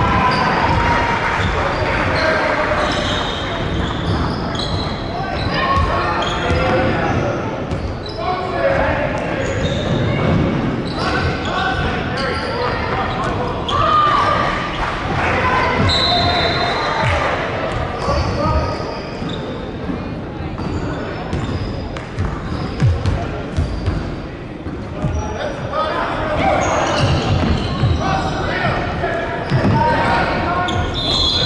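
A basketball being dribbled on a hardwood court, repeated bounces, mixed with players' and spectators' voices, all echoing in a large sports hall.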